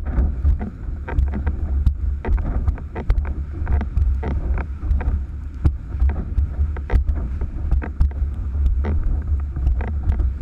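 Gusty wind buffeting the microphone of a camera mounted high on a windsurf rig: a constant low rumble, with the rush of the planing board over choppy water and frequent short knocks.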